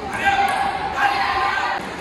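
Table tennis ball clicking off paddles and table during a rally, with voices giving two drawn-out shouts over it in a reverberant hall.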